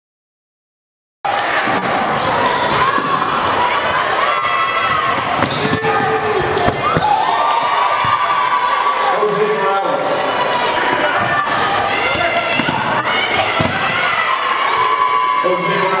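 Basketball game sound in a gym: a ball dribbling on the hardwood court amid crowd and players' voices, starting about a second in after silence.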